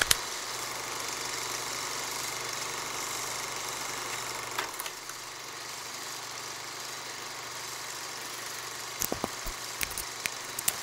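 A steady hiss with a low hum, broken by a few sharp clicks, several of them close together near the end.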